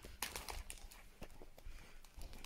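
Cardboard biscuit boxes and their plastic wrapping being handled in a metal basket: a few light, irregular knocks and crinkles.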